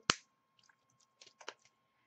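One sharp click just after the start, then a few faint clicks and taps: a small plastic bottle of acrylic craft paint being squeezed and handled on the table.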